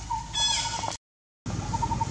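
A short, high-pitched macaque squeal that falls in pitch, about half a second in, over a faint, evenly repeated chirping. The sound cuts out completely for about half a second just after the middle.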